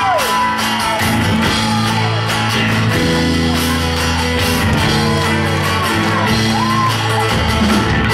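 A live rock band starting a song: guitar and bass notes come in about a second in. The crowd whoops and shouts over the opening bars.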